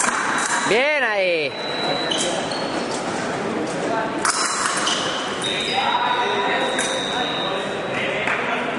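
A fencer's shout, one pitch rising and falling, about a second in as the two fencers close, over a steady high electronic tone from the scoring apparatus signalling a hit. A second long steady scoring tone sounds in the latter half, with sharp clicks and murmur in a large, echoing hall.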